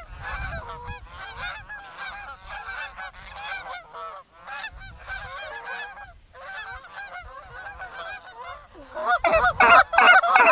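A flock of Canada geese honking, many calls overlapping without pause, growing much louder about nine seconds in as the birds come closer.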